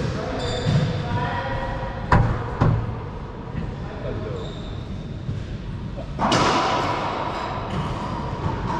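Racquetball ball smacks echoing in an enclosed court: two sharp hits about two seconds in, half a second apart, then a louder, noisier stretch of play about six seconds in.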